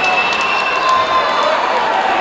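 Boxing crowd noise: many voices shouting and cheering together, with one long, steady, high whistle that stops about a second in.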